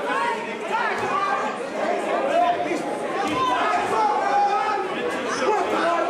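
Many voices talking and calling out over one another at once, indistinct crowd chatter echoing in a large hall.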